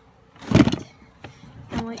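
A brief, loud handling noise about half a second in: a rustling knock as things are shifted among plastic food containers and a food bag in a cabinet.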